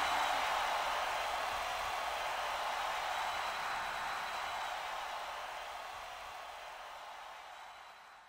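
Steady hiss without pitch left after the song's last hit, fading slowly and then stopping as the music track ends.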